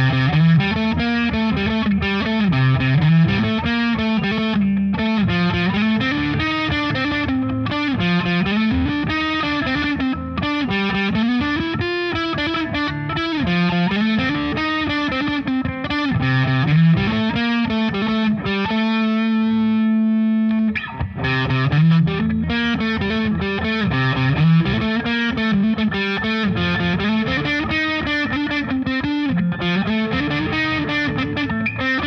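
Les Paul electric guitar played through a Pogolab overdrive pedal with its bright switch on and its knobs at noon, into a Marshall combo amp. It plays a distorted riff that repeats about every two seconds. About two-thirds of the way through, one note is held and rings for about two seconds before the riff starts again.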